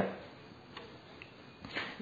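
A brief pause in a man's talk: faint steady hiss, with two soft ticks in the middle and a short breath-like noise near the end.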